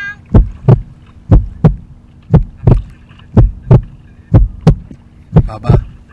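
Heartbeat sound effect: pairs of low thumps, two close together about once a second, over a steady low hum.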